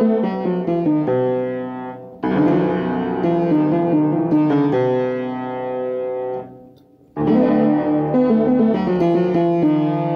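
Upright acoustic piano being played: a quick falling run of notes, then struck chords that are held and left to ring. The sound dies away to near nothing about seven seconds in, then more chords and another falling run follow.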